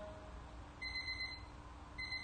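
A quiet break in a music track after the singing stops: two faint, high electronic beeps about a second apart, each lasting well under a second, over a soft steady low hum.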